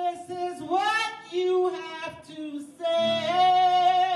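A woman singing a gospel-style song into a microphone, in phrases of long held notes.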